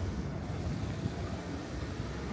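Night-time city street ambience: a steady low rumble of distant traffic and urban background noise, with no distinct events.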